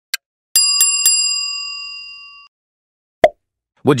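The last tick of a countdown timer, then a bell sound effect struck three times in quick succession that rings on and fades over about two seconds, signalling time's up. A single short, loud hit follows about a second later.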